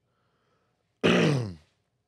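A man's short wordless vocal sound, a grunt-like voiced 'hmm', about a second in, falling in pitch over half a second and fading out.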